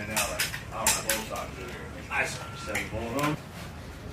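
Sharp metallic clicks and rattles of rifle parts being handled, a quick run of clicks in the first half and fewer after, with a man's voice in between.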